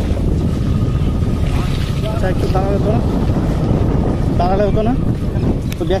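Wind rumbling on the microphone from a moving motorcycle, with road and engine noise underneath.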